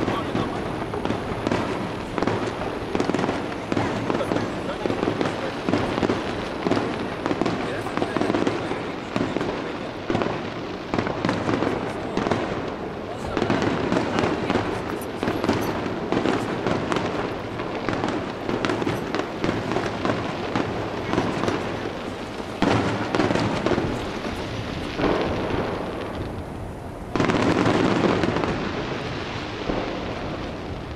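Fireworks display: aerial shells bursting in a dense, continuous run of bangs, with a louder burst of activity near the end.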